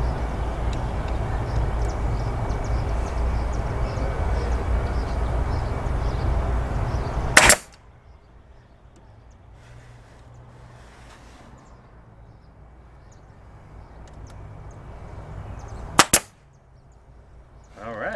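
A pneumatic brad nailer fires into pallet wood: one sharp shot about seven and a half seconds in, then two shots in quick succession near the end. A loud steady mechanical running noise fills the first part and stops right at the first shot.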